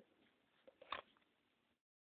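Near silence, with a few faint short clicks about a second in.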